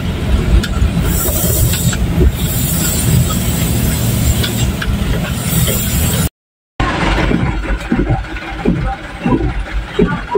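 Truck driving, heard from inside the cab: a steady low engine and road rumble with two stretches of added hiss. The sound cuts out completely for half a second just past halfway, then the same running noise resumes.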